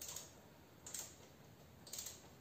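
Three faint, sharp clicks about a second apart from a wrench being worked on the top triple-clamp bolts of a KTM dirt bike's front fork.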